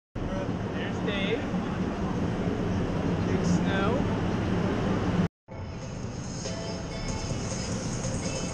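Snowboard sliding and scraping over snow, a steady rushing noise with faint voices in it. It cuts out abruptly a little over five seconds in and resumes quieter.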